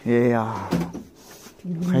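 Men talking in a small room: a long drawn-out voiced sound at the start, a short lull, then speech again near the end.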